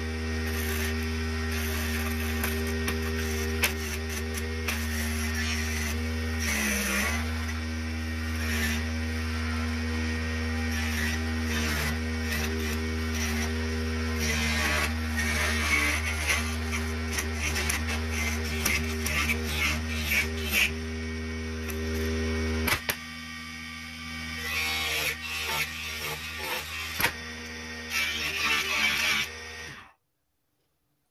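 Mini wood lathe's motor running with a steady hum while a hand chisel scrapes the spinning wooden honey dipper. The hum dips briefly in pitch under the cut about a quarter of the way in and drops in level about three-quarters of the way through, and the sound stops abruptly at the very end as the lathe is switched off.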